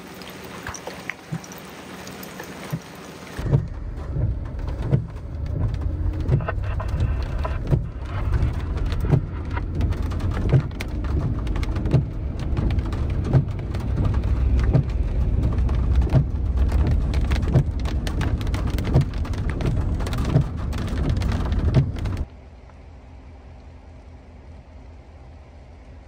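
Rain falling on wet pavement, then from about three seconds in a loud low rumble of a vehicle driving on a wet road, with raindrops ticking against it. Near the end it cuts off suddenly to a quieter steady hiss.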